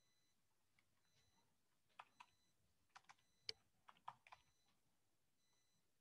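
Faint computer keyboard typing, about ten key presses between two and four and a half seconds in, over near silence.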